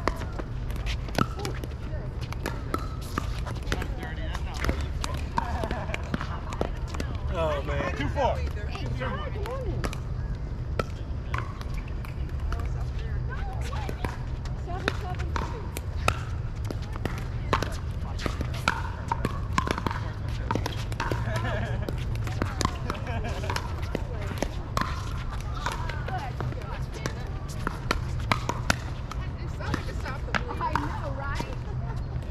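Pickleball paddles striking the hard plastic ball during a doubles rally: a string of sharp pops at irregular intervals, with voices talking in the background.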